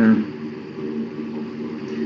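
A steady low hum made of a few even, unchanging tones, like a motor or appliance running, with the tail of a man's voice in the first moment.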